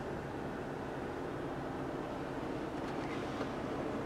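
A steady, faint background hum with no distinct events.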